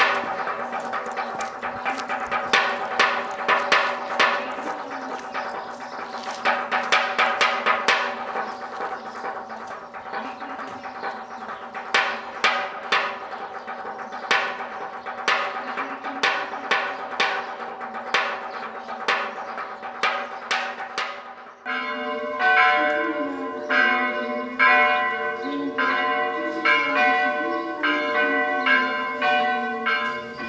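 Church bells of an Orthodox monastery rung in quick, rhythmic strikes over the sustained hum of their ringing. About two-thirds of the way through it cuts abruptly to a different peal with other bell tones.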